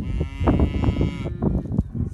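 A cow mooing once: a single long call of about a second and a quarter, starting right at the beginning.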